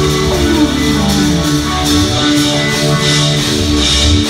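Live rock band playing an instrumental passage: electric guitars over bass and drums, with sustained notes and a gliding line sliding down early on.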